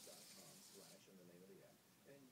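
Near silence: faint distant voices in the background, with a light hiss in the first second.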